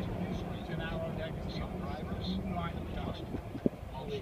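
Steady low hum of a car's engine and road rumble, heard from inside the cabin as it drives up a mountain road.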